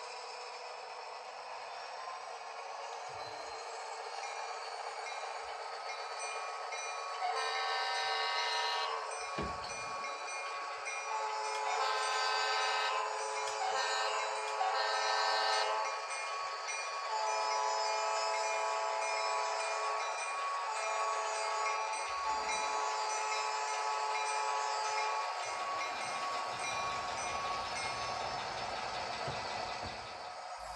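Model diesel locomotive sound from a small speaker: a steady engine note, with a multi-chime air horn sounding two long blasts, a short one and a long one, the grade-crossing signal. Softer steady horn-like tones follow until a few seconds before the end.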